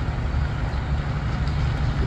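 A steady, loud low engine hum, like a diesel vehicle idling nearby.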